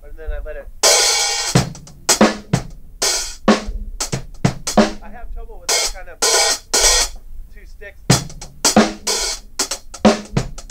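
Drum kit playing a groove in which the hi-hat is opened and closed with the foot: bright open hi-hat washes, each cut short as the cymbals close, about once a second among snare and bass drum hits. The closings are meant to fall on a set subdivision of the beat, so that they are part of the rhythm.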